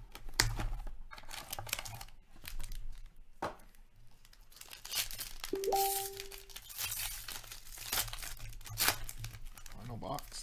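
Foil trading-card packs and their box being torn open and handled: a run of irregular crinkling and tearing rustles. A short held tone of about a second sounds just past the middle.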